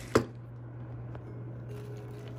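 A single sharp knock just after the start as the heavy gold pendant is handled and set down on tissue paper, then a few faint handling ticks, all over a steady low hum.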